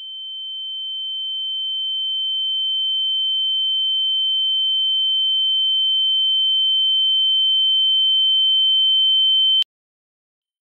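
A single high-pitched sound-design note, one steady pure tone, swelling from faint to loud and then cutting off abruptly just before the end.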